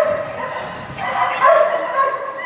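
A dog barking several times in quick succession while it runs an agility course, short high barks from a dog excited by the run.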